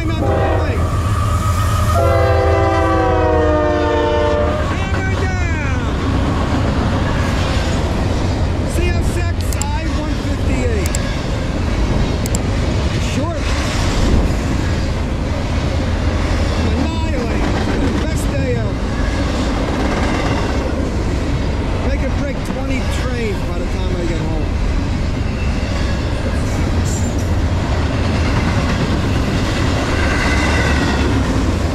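CSX intermodal freight train passing: the diesel locomotive's multi-tone horn blows about two seconds in for roughly two and a half seconds. Then the locomotives rumble by and a long string of double-stack container cars rolls past with a steady rattle and occasional sharp clanks.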